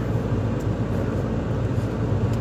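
Steady low hum of a parked Mazda's engine idling, heard from inside the car's cabin.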